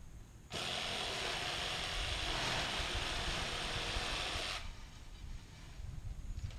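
Power tool cutting palm fronds, running steadily for about four seconds: it starts suddenly about half a second in and cuts off sharply.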